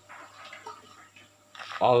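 Faint water splashes and drips at an aquarium's surface as fish food is dropped in by hand, then a man's short exclamation near the end.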